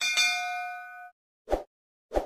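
Notification-bell sound effect: one bright bell ding with several ringing tones that fades out over about a second. A short, dull pop follows about a second and a half in.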